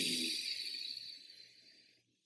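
A long, breathy whoosh of hard blowing, the wolf's blow that knocks the child over, fading out over nearly two seconds.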